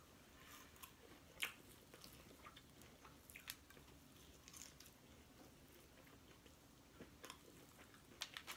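Faint eating sounds of a person chewing and biting fried chicken wings, with a few scattered small sharp clicks. The clearest click comes about one and a half seconds in.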